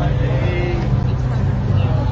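A wooden tourist boat's engine running with a steady low hum, with people talking over it.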